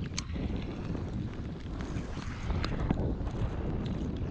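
Wind buffeting an open microphone in a steady low rumble, with a few sharp clicks, the clearest just after the start and two close together near three seconds in.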